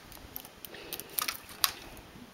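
Light metal clicks of a transfer tool and latch needles on a knitting machine's needle bed as stitches are moved onto neighbouring needles: several short, sharp clicks, the loudest about one and a half seconds in.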